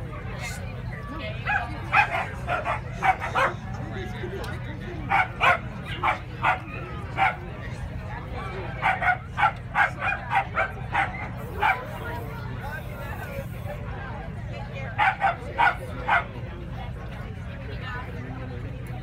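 Scottish Terrier barking in four bouts of several short barks each, with pauses of a few seconds between the bouts.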